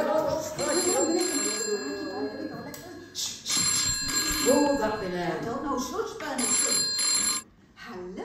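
Old-style telephone bell ringing in three rings of about a second each, stopping near the end as the receiver is picked up.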